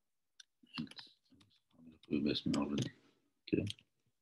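Computer keyboard clicks as code is typed and pasted into a text editor, with a man's voice speaking quietly over most of it and saying "okay" near the end.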